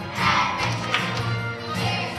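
A children's choir singing a song with instrumental accompaniment.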